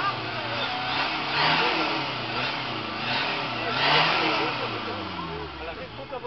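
Car engine revved hard through its exhaust at the tailpipe during a sound-level test, blaring up about a second and a half in and again about four seconds in, each time dropping back, and settling near the end.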